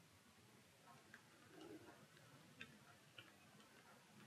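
Near silence with a few faint, scattered clicks from a Ryobi Metaroyal VS spinning reel being handled and its rotor turned by hand.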